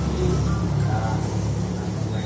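A low, steady rumble that starts suddenly, with faint voices behind it.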